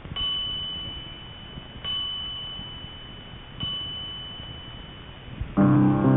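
Three identical high bell-like chime tones, struck about 1.8 seconds apart, each ringing and fading before the next. Piano music comes in near the end.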